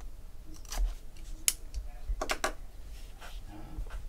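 A small cardboard trading-card pack box being opened and handled: its lid slides off and the box is set down, giving a few light clicks and scrapes, with a quick run of clicks near the middle.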